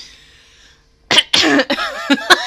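A woman bursts out laughing about a second in, the first burst sharp and cough-like, then loud pulses of voiced laughter.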